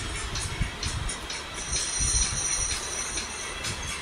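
Plastic toy train track sections being handled and pressed together on a hard floor: a string of irregular clicks and knocks, with a brief high squeak about two seconds in.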